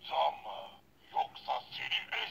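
Ben 10 Omnitrix toy watch playing electronic sound effects and a character voice from its small built-in speaker, in several short bursts with little bass.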